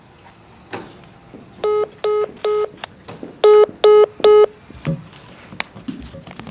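Electronic beeps: two sets of three short, identical beeps about 0.4 s apart, the second set louder. A few soft knocks and handling sounds come before and after them.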